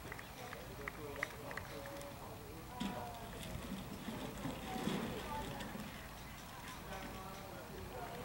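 Faint, distant voices of players calling out across an open playing field, over low outdoor background noise.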